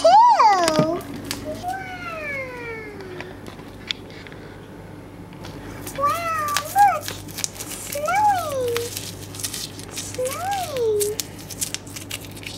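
A high voice making wordless, meow-like calls that rise and fall in pitch, about six of them a second or two apart, the second a long downward slide.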